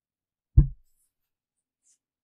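A single short, low thump close to the microphone about half a second in, like a bump or brush against the microphone.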